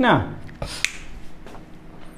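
A single short, sharp click under a second in, after a brief spoken word at the start, over quiet room tone.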